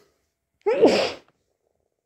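A person sneezing once, about two-thirds of a second in: a short, loud sneeze with a voiced cry that falls in pitch.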